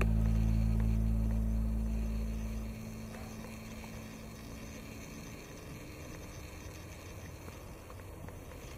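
Background music ending on a held low chord that dies away about three seconds in, leaving a faint, steady outdoor hiss.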